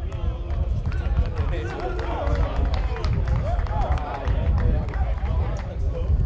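Football players' voices shouting and calling across an open pitch, unclear and overlapping, over a steady low rumble, with a few light knocks scattered through.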